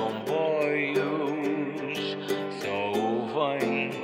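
Acoustic guitar song with a man singing a melodic line over strummed chords.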